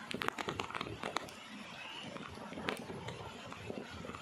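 Footsteps and rustling on dry leaf litter and dirt on a steep trail. A quick cluster of sharp crackles and clicks comes in the first second or so, then a few scattered clicks over a faint outdoor background.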